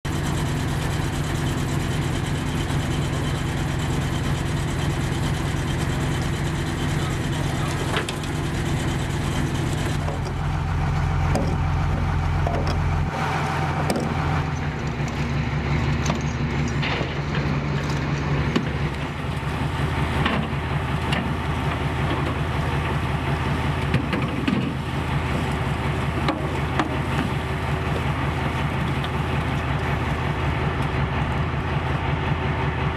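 A fishing boat's engine running steadily, with scattered knocks from work on deck. The engine's note shifts about a third of the way in.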